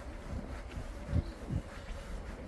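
Wind rumbling on the microphone, with a faint steady buzz above it and two low thumps a little past the middle.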